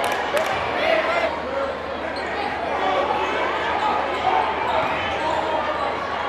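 Spectators talking in a school gym during live basketball play, with the ball bouncing on the court.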